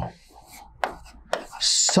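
Writing on a board: a few sharp taps of the writing tip, then a short scratchy stroke near the end.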